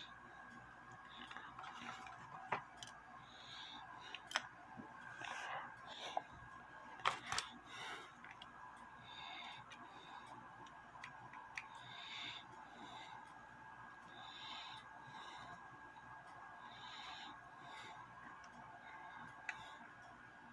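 Faint light metal clicks and scrapes of a small screwdriver and fingers working on a brass clock movement, unscrewing its crutch assembly, over a faint steady hum.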